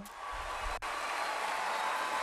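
Steady audience applause and crowd noise from a live concert recording, with a brief dropout about a second in.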